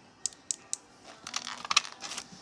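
Small hard plastic items being handled: three quick clicks about a quarter second apart, then a busier run of clicking and plastic crinkling, loudest near the end.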